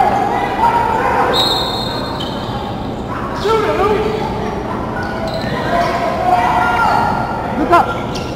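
A basketball game in a gym: a ball bouncing on the hardwood floor, sneakers squeaking as players break up the court near the end, and players' and spectators' voices in the background of the hall.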